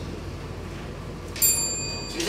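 A small timekeeper's bell struck once, about one and a half seconds in, ringing with several clear high tones that fade away.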